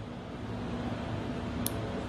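Steady low room hum, with a single light click about one and a half seconds in as the hinged metal bracelet is worked open.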